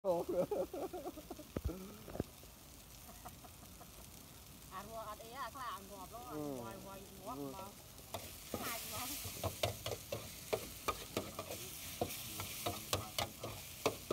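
Food frying on a large flat metal griddle: from about eight seconds in, a steady sizzle with a metal spatula scraping and clacking against the pan in quick, irregular strikes. Wavering, pitched calls come at the very start and again around five to seven seconds, and the first of them is the loudest thing.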